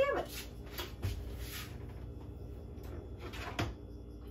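Oven door being opened and a baking dish handled. A few light knocks, then a brief rush of sound about a second in, and a sharper clunk near the end.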